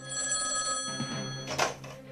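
Telephone ringing with a steady ring that stops about a second and a half in, at a short clatter as the rotary desk phone's handset is lifted off its cradle.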